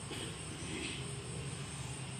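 A steady low mechanical drone in the background, with no words over it.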